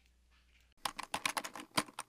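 Computer keyboard typing sound effect: a quick run of key clicks, several a second, starting almost a second in, in step with text typing onto the screen.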